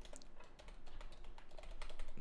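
Faint typing on a computer keyboard: a run of irregular individual keystrokes.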